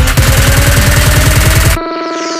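Electronic dance music: a fast drum roll builds under a slowly rising synth tone, then cuts off shortly before the end, leaving a held synth chord.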